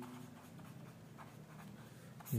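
A pen writing on paper on a clipboard: faint, scattered scratches of the strokes as the word "believe" is written.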